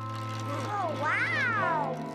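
A cat's meow: one call that rises and then falls in pitch about halfway through, over held notes of background music.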